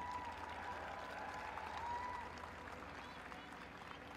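Audience applauding, easing off slightly in the second half.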